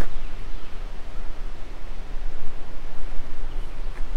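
Wind blowing on the microphone: an uneven rushing noise with a low rumble.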